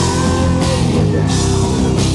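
Rock band playing live and loud: electric guitars and bass over a drum kit, with cymbal crashes coming and going about every half second.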